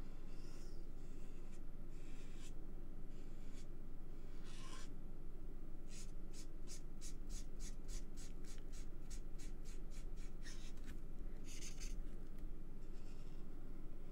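A Stampin' Blends alcohol marker's brush tip rubbing on cardstock as an image is coloured in. The strokes come irregularly at first, then as a quick run of short back-and-forth strokes, about four or five a second, through the middle.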